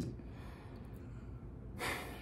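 Quiet pause with a low room hum, then a quick audible intake of breath near the end, just before speaking resumes.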